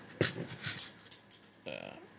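A sharp click followed by several lighter ticks of small brass pieces on a hard surface: a dropped .22 Hornet case clattering, with primers shifting in a plastic primer tray as it is tilted.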